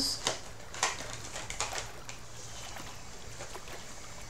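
Tarot cards being handled and drawn from the deck: a few short soft clicks and card snaps in the first two seconds, then only a faint low hum.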